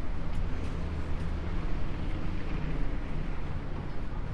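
Street noise at a city intersection: a steady low rumble of traffic, with wind blowing on the microphone.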